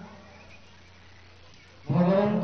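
A man's intoned recitation fades out at the start, then a pause of under two seconds with only a faint low hum and room noise before the voice returns at the end.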